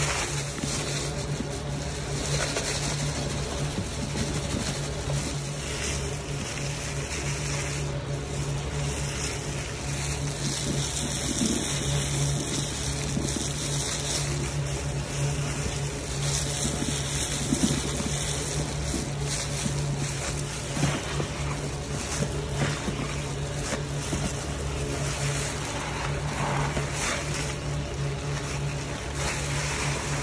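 A sponge soaked in thick pink Pine-Sol suds being squeezed and pressed by gloved hands, giving continuous wet squelching and crackling of foam and liquid. A steady low hum runs underneath.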